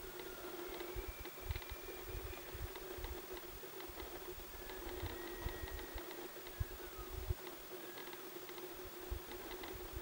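Faint, thin whistling notes of distant bull elk bugling, several held high notes, one sliding down at its end, over a steady low hum, scattered low thumps on the microphone and small clicks.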